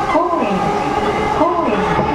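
A person's voice speaking over the steady running hum of an E233-series electric train, heard from inside the motor car, with several steady tones held throughout.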